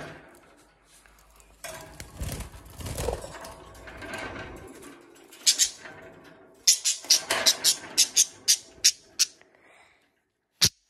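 Budgerigars calling: a quick run of about a dozen short, sharp, high squawks at roughly three a second in the second half, after a few seconds of rustling handling noise at a wire birdcage.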